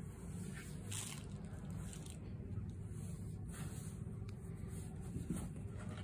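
Soft, faint scuffing and rustling of a cat rolling and rubbing against the cardboard of a box, a few brief scrapes over a low steady rumble.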